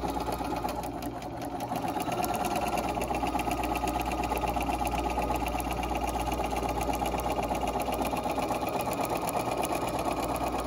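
Electric sewing machine stitching a straight seam through pinned quilt fabric, needle strokes coming fast and even. It grows louder about two seconds in and then runs steadily.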